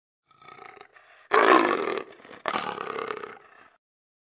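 Female leopard's rasping roar, the sawing call: a faint grunt, then two loud harsh rasps, the second longer, dying away before four seconds. Tags describe it as a female calling a male.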